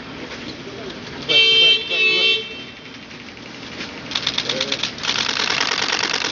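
A car horn honks twice in quick succession, each blast about half a second long and the loudest sound here. From about four seconds in, camera shutters fire in rapid bursts of clicks.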